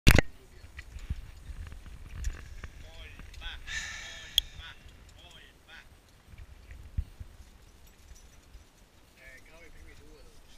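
A loud knock as the head-mounted action camera is handled, then scattered clicks and crunches of boots on loose limestone scree and low rumble of movement on the microphone, with faint voices in the background.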